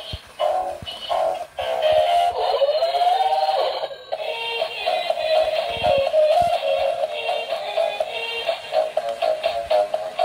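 Battery-powered dancing Iron Man toy playing an electronic song with synthetic-sounding vocals through its small built-in speaker while it dances. The sound is thin and tinny, with no bass.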